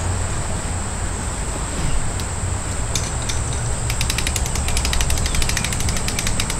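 Patio umbrella's crank-lift mechanism ratcheting as the handle is turned to open the canopy: a few scattered clicks, then a fast, steady run of clicks from about halfway through.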